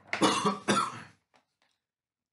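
A person coughing twice in quick succession, each cough about half a second long.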